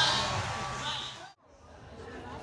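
Indistinct voices of people chatting, cut off abruptly a little over a second in by an edit, after which quieter chatter fades back in.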